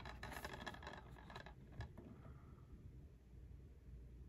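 Faint handling noise of a plastic DVD case being turned over in the hands: a few light clicks and rubs in the first two seconds, then near silence with faint room tone.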